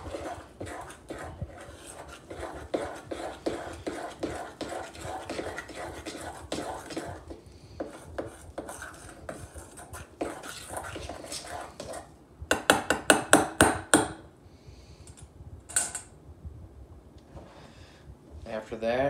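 Metal spoon stirring and scraping a thick paste of powdered peanut butter and water around a stainless steel bowl, with steady clinks against the metal. About twelve and a half seconds in comes a quick run of loud, sharp clinks, and one more clink a few seconds later.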